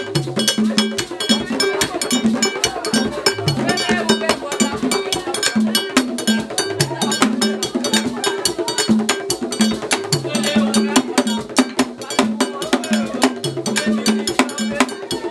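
Music driven by percussion: a fast, steady clicking beat like a bell or wood block, over recurring low drum notes.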